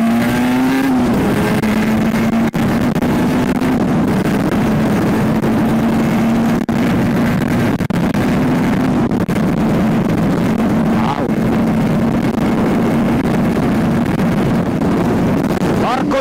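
Aprilia 50cc two-stroke motorcycle engine running at steady cruising revs, holding one even pitch, with wind rushing over the microphone.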